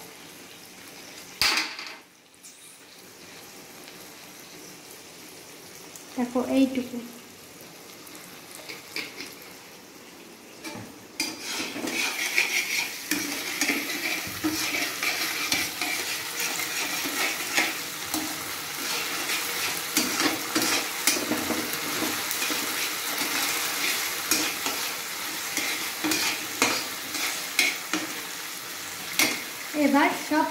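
Chopped onion, capsicum and garlic frying in sauce in a wok, sizzling, while a slotted spoon stirs and scrapes against the pan. The sizzle grows louder about eleven seconds in.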